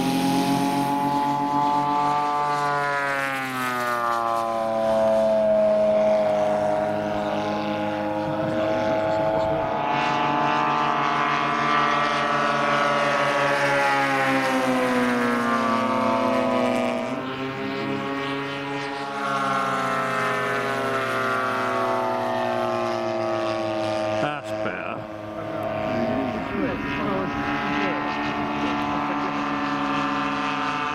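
Radio-controlled scale model warbirds flying, their engines and propellers droning and sliding up and down in pitch as they throttle and pass by. For much of the time two aircraft are heard at once.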